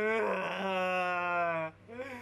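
A young man's long, drawn-out moaning vocal exclamation, held on one slightly falling pitch for about a second and a half, then cut off.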